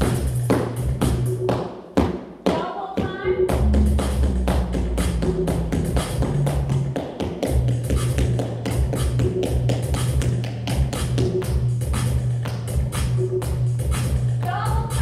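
Tap shoes clicking on a hard studio floor in quick rhythm during a tap warm-up, over loud pop music with a steady bass beat. The music briefly drops out about two seconds in, then comes back.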